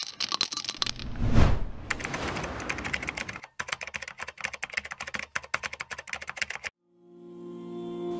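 Logo-intro sound effects: a whoosh about a second in, then a fast run of sharp metallic clicks lasting several seconds that stops abruptly near the end, followed by a steady held tone as music begins.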